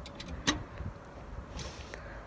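Wind rumbling on a handheld phone microphone, with a few light clicks, the sharpest about half a second in.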